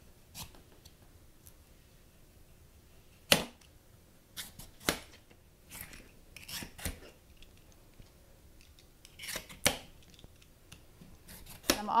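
Y-shaped vegetable peeler scraping strips of tough skin off a butternut squash: about a dozen short, uneven scraping strokes with pauses between them.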